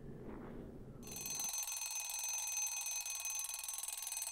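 A high, steady ringing, like an alarm, starts suddenly about a second in, over faint outdoor background noise that drops away half a second later.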